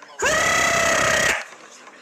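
A horn-like sound effect: one steady pitched tone that swoops up at its start, holds for about a second and cuts off.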